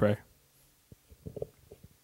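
The end of a spoken word, then a handheld microphone being lowered and passed from hand to hand: a cluster of faint, dull handling bumps and knocks on the mic body, with a few more near the end.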